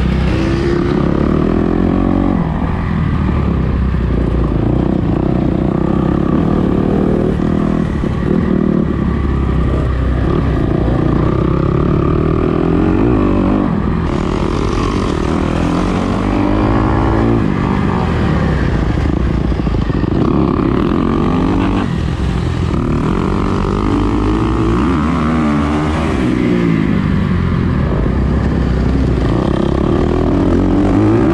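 Dirt bike engine being ridden hard, its pitch rising and falling over and over as the throttle is opened and closed, with other dirt bikes running close by.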